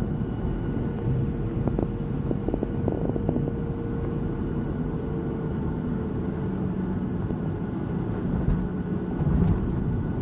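Jet airliner cabin noise as the aircraft rolls along the runway after landing: a steady rumble from the wing-mounted turbofan engine, with a steady engine tone that fades away about halfway through and a lower tone taking over near the end. A few light rattles sound in the first few seconds.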